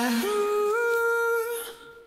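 Isolated male vocal with no instruments: a long sung note without words, held on one pitch, that steps up about a quarter of the way in and again a little about halfway, then fades out shortly before the end.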